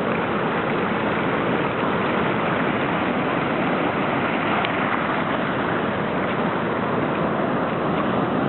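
Atlantic surf breaking and washing over a sandy beach and rocks: a loud, steady rushing noise that never lets up.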